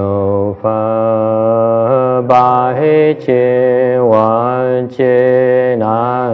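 Slow Buddhist liturgical chanting: long drawn-out sung syllables with short breaks for breath every one to two seconds.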